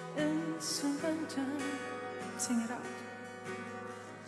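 Live worship song: a lead vocalist sings a slow, sustained melody over band accompaniment with held chords.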